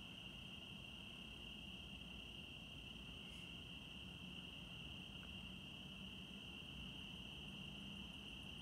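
Crickets trilling, a steady unbroken chorus at one high pitch, faint, with a low hum underneath.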